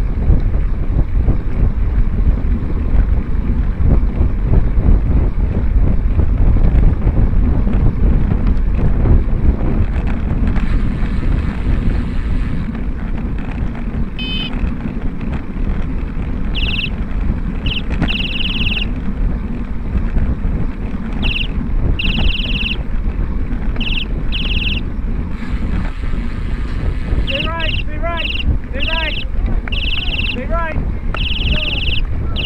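Wind buffeting the microphone over a steady low road rumble as wheels roll along asphalt at race speed. Near the end, short rising-and-falling calls from spectators cheering come in over it.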